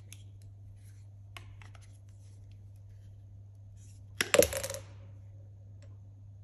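Pipe shears cutting through plastic push-fit pressure pipe: a couple of faint clicks, then a quick run of sharp clicks ending in a crack a little over four seconds in as the blade goes through the pipe.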